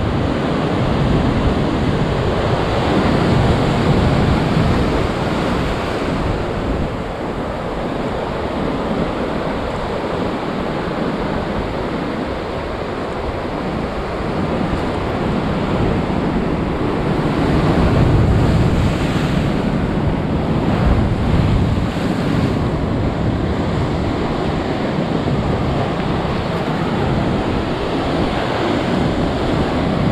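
Heavy surf breaking on a rocky shore, a continuous rushing wash of big waves that swells louder a few seconds in and again about halfway through.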